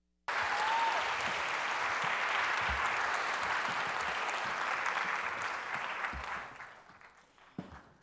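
Large audience applauding. The applause starts suddenly and dies away about six or seven seconds in.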